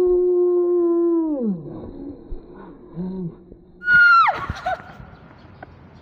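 A woman's long drawn-out wail, held on one pitch and then falling away about a second and a half in, as she cries out after water has splashed into her face and eyes. A short low cry follows, then about four seconds in a brief loud high shriek that drops sharply in pitch.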